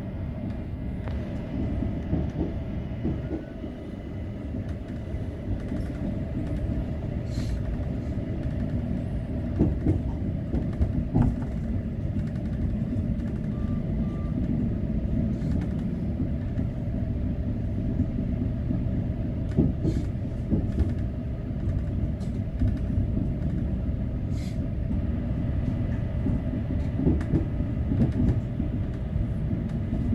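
Electric narrow-gauge passenger train running downhill, heard from inside the driver's cab: a continuous low rumble of wheels on rail and running gear, with scattered knocks and clicks from the track.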